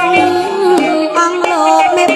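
Khmer classical music ensemble playing: a melody with sliding, bending pitches over short percussion strokes.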